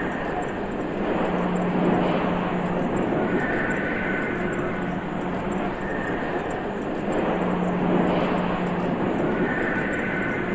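Drone track built from altered field recordings of an automobile assembly plant: a dense, steady rushing machine noise with a low hum and a pair of higher tones that swell and fade every few seconds.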